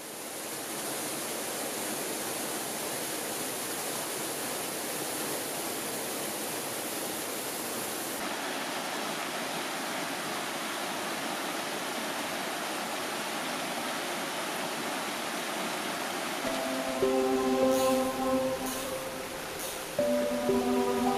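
Steady rush of a mountain stream's flowing water, coming up out of silence at the start. About sixteen seconds in, soft background music with sustained notes begins over the water.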